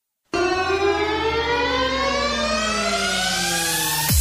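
Synthesizer sweep opening an electronic pop song. It starts suddenly, with layered tones gliding up and down in pitch at the same time.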